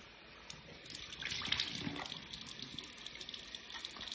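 Cold water running from a bathroom tap into the sink, with irregular splashing as hands bring water up to rinse face wash off the face.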